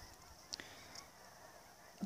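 Near silence with faint, brief honks of a distant flock of geese.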